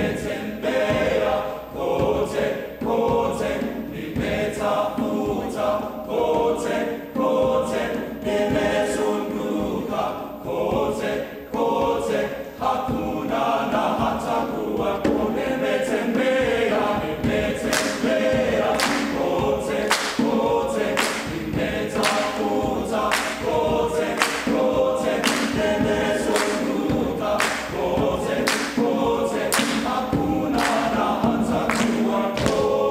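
Men's choir singing a cappella. A little past halfway, steady rhythmic hand claps join in, about three every two seconds, and run on under the singing.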